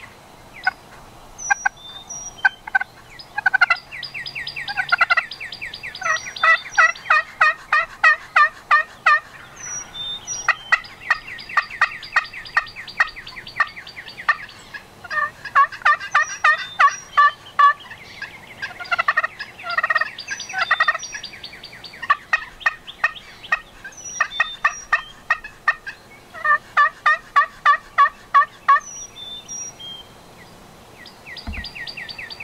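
Loud runs of rapid turkey yelps and cutts, several notes a second, each run lasting two or three seconds and repeating with short pauses between.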